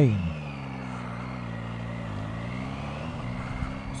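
Triumph Tiger three-cylinder motorcycle engine running at a steady low pitch while the bike rounds a roundabout, the note dipping slightly about halfway and rising again as it pulls out.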